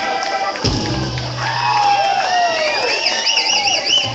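A held electric organ chord stops about half a second in. A thump follows, then a live audience cheering with rising and falling whoops and high whistles over a low held hum.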